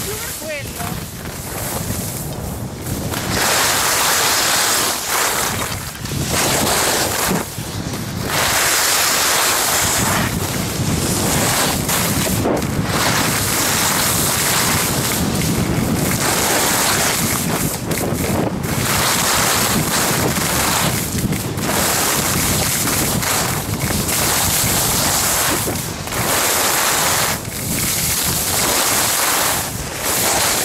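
Wind buffeting the camera microphone together with skis hissing and scraping over packed snow during a downhill run, the noise swelling and dropping every few seconds.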